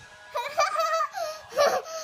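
Young child laughing in high-pitched bursts, twice.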